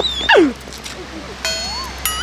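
A high-pitched yelp from a person that rises and then swoops steeply down in pitch. About a second and a half in, an edited-in cartoon sound effect follows: a clean tone that glides up, then wobbles.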